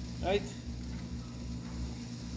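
Pork ribs sizzling faintly on a hot drum grill's grate while being turned with tongs, over a steady low hum.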